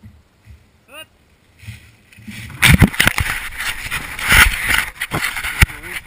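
Rustling, scraping and knocking of a camera being handled and picked up, loud on the microphone from about two and a half seconds in, after a quiet start.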